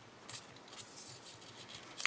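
Faint rustling of a thin paper strip handled between the fingers as its knot is drawn snug, with a small tick about a third of a second in.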